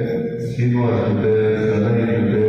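A low male voice chanting in long held notes that step from one pitch to the next.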